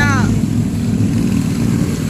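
Steady low rumble, with a voice briefly trailing off at the start.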